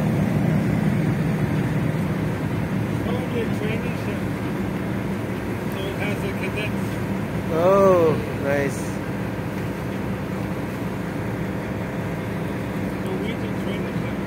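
Steady low hum of harbour background noise, with faint voices and a short loud call a little past the middle.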